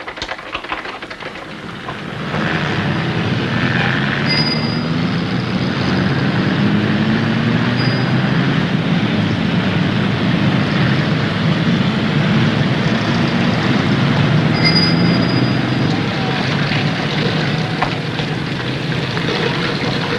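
Busy street ambience of many overlapping voices chattering, with general street noise, rising to a steady level about two seconds in. Two brief high-pitched tones sound about ten seconds apart.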